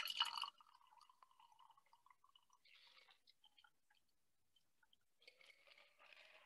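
Shaken cocktail being strained from a shaker tin into a glass, heard faintly as a trickle of liquid in the first half-second. After that it is near silence, with only a few faint drips.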